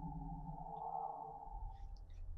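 A faint steady hum made of several held tones, with a few faint ticks near the end.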